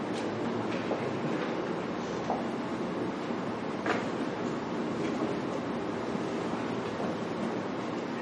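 Steady room noise with a few soft knocks and rustles from papers and objects being handled on a table.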